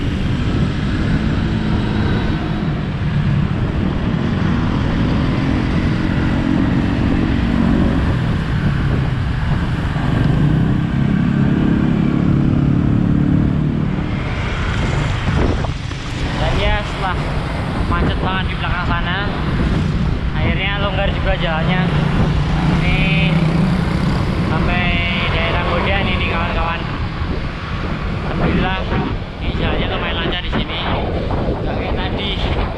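Motor-scooter engines running close by in slow town traffic, over a constant low rumble of wind on a moving bicycle-mounted microphone. Voices talk from about halfway through.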